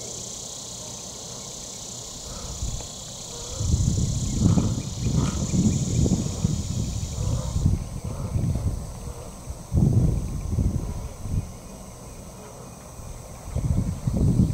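Irregular low rumbling buffets of wind on the microphone, starting about three and a half seconds in and easing off near the end, over a steady high-pitched insect chorus that cuts off abruptly about halfway through.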